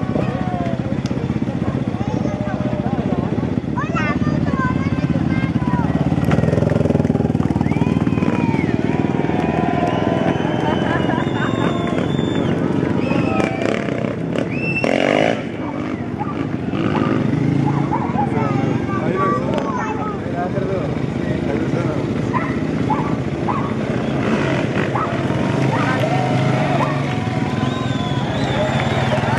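A crowd of spectators chatters and calls out over the steady low running of a rally motorcycle's engine. There is a brief burst of noise about halfway through.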